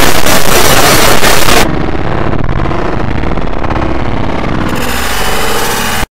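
Loud, harsh, heavily distorted and clipped noise. About one and a half seconds in it drops to a duller, muffled stretch, and it comes back at full harshness near the end.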